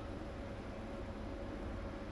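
Steady background hiss with a faint low hum: the room tone of the voiceover recording, with no distinct events.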